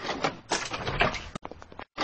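Cartoon sound effect of knuckles knocking on a glass window pane, a few short knocks.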